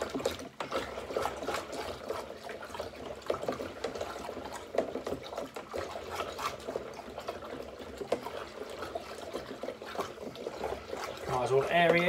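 Honey-water for mead stirred with a spoon in a plastic jug: liquid sloshing, with small irregular knocks and scrapes of the spoon against the jug.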